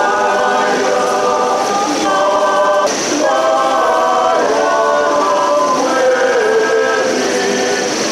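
A choir singing a slow hymn in long held notes that move to new pitches every second or two.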